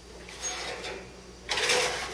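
A metal sheet pan being put into a kitchen oven: a short scraping clatter about one and a half seconds in as the pan goes in past the oven door onto the rack.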